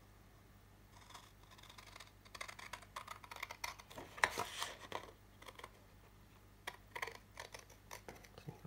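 Scissors snipping through patterned craft paper in a run of short, faint cuts. The cuts start about two seconds in, pause briefly, and come again a few times near the end.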